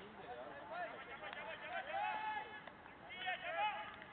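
Several men's voices calling and shouting across an open cricket field, words unclear, loudest about two seconds in and again just before the end.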